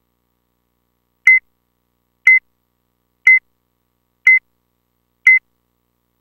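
Electronic beep sound effect: five short, identical high beeps, one per second, starting about a second in, keeping time like a countdown.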